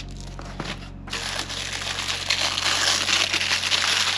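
Tissue paper crinkling and rustling as it is unfolded and handled by hand, starting about a second in and getting louder.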